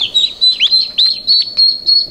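Two-day-old Cayuga ducklings peeping: a busy run of high, short peeps, several a second, many of them sliding downward in pitch.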